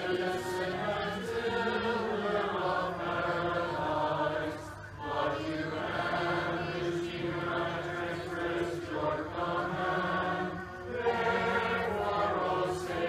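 A congregation singing Byzantine liturgical chant together in long held phrases, with short breaks for breath about five and eleven seconds in.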